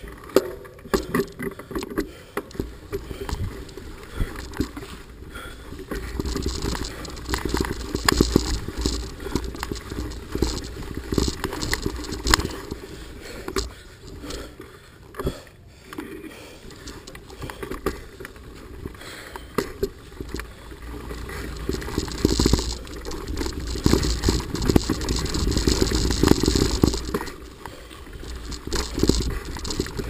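Mountain bike riding down a rough dirt trail: continuous rattling and clattering of the bike over the bumpy ground, with tyre noise and a low wind rumble on the microphone, growing louder and rougher in the last third.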